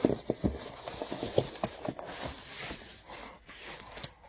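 Cardboard box and plastic-wrapped packaging being handled and shifted: an irregular run of light knocks and taps, with a short rustle of plastic about two seconds in.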